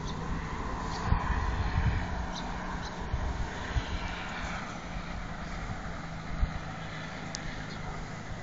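A steady engine drone with a low, even hum, heard over a hiss of outdoor noise.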